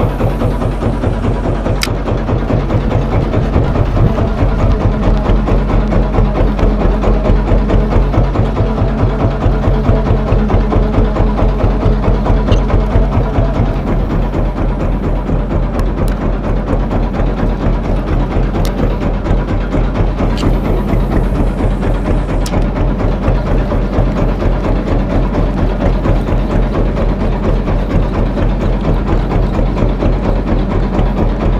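Wooden fishing boat's inboard engine running steadily with a fast, even thudding, with a few short ticks over it.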